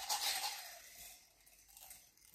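Small top-dressing stones rustling and sliding against a ceramic cup as they are scooped by hand, fading out after about a second, with a couple of tiny clicks near the end.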